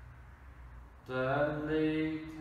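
A man's voice drawing out a long word in a slow, steady monotone, the held-vowel delivery of a hypnotic induction, starting about halfway through. Before it there is only a faint low hum.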